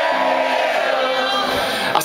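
Live rock band playing electric guitars, with crowd voices over the music.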